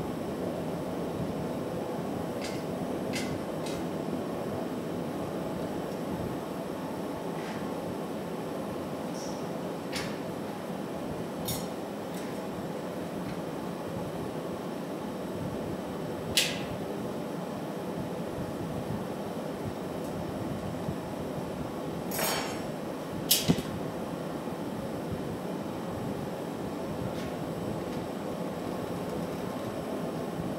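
Steady roar of a glassblowing furnace's burner, with occasional sharp clinks of metal tools and pipe against steel. The loudest clink comes about halfway through, with two more close together a few seconds later.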